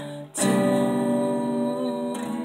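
Solo acoustic guitar playing with a woman's voice singing one long held note, which comes in after a short dip about half a second in.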